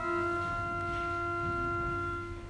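Church pipe organ moving to a new chord at the start and holding it steadily, the notes flat and unwavering.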